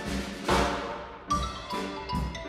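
Ragtime trio of xylophone, piano and percussion playing. A cymbal crash about half a second in rings out and fades over a short break, then the struck xylophone and piano notes pick up again about a second later.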